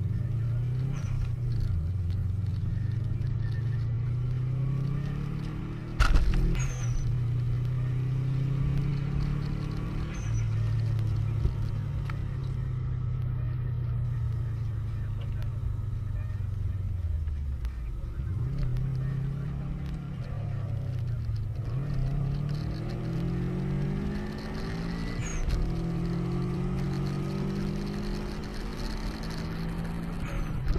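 A car engine running hard under acceleration, its pitch climbing and then dropping back at each gear change, over and over. There is a sharp knock about six seconds in.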